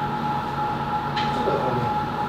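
Steady restaurant room noise: a constant mechanical hum carrying two unwavering high tones, with a faint voice near the end.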